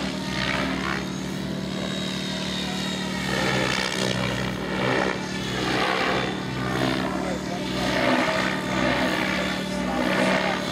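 Thunder Tiger G4 radio-controlled model helicopter in flight, its motor giving a steady hum under rotor blades that whoosh in repeated swelling, sweeping surges as it turns and flips through aerobatic manoeuvres.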